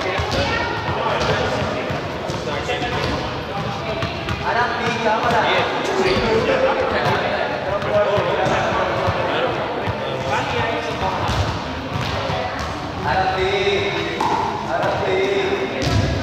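Overlapping voices of people talking, echoing in a large sports hall, with repeated thuds of balls hitting the hard floor.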